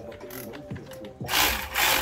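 Milwaukee cordless power ratchet running in two short bursts near the end, after a quieter first second, turning a brake caliper guide-pin bolt that keeps spinning in place instead of backing out.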